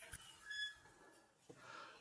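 Metal pool-fence gate being opened by hand: a sharp click just after the start, then a short, high, thin squeak about half a second in.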